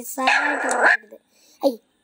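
Recorded dog bark from Google's 3D Pomeranian model: one rough bark lasting most of a second, then a short sound about a second and a half in.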